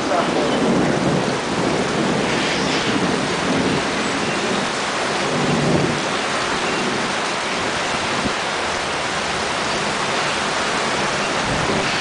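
Heavy monsoon rain falling steadily, with a low rumble of thunder swelling and fading about six seconds in.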